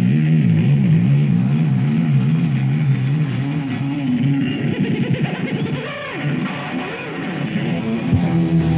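Live rock band on a soundboard recording: electric guitar played with wide, wavering vibrato and pitch bends over bass, breaking into quick sliding sweeps in pitch about five seconds in.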